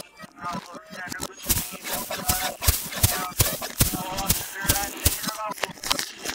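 Dense rattling and crackling clicks, several a second, starting about a second and a half in, mixed with short voice-like sounds.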